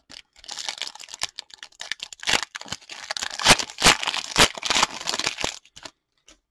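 Foil wrapper of an Upper Deck hockey card pack being torn open and crinkled by hand: a dense run of crackling, with several louder snaps from about two to four and a half seconds in.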